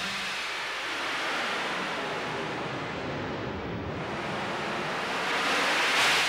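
A steady rushing noise like wind or surf, a sound effect for the opening titles, growing louder and brighter near the end.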